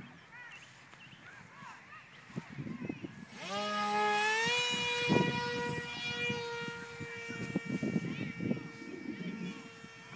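Electric motor and 7x5 propeller of a small foam RC jet: a pitched whine rises about three and a half seconds in as the throttle opens, then holds steady.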